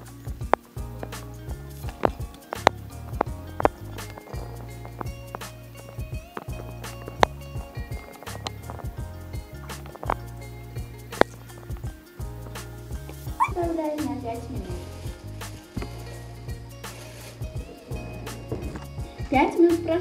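Background music with a steady beat, over repeated sharp clinks of a metal fork striking the sides of a glass bowl as liquid is whisked. A short voice-like call sounds about two-thirds of the way through, and a voice comes in at the very end.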